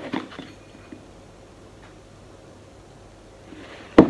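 Coconut sugar poured from a plastic container into a small plastic measuring cup: a brief gritty pour at the start and a soft rustling pour near the end, then a sharp knock as the container is set down on the counter.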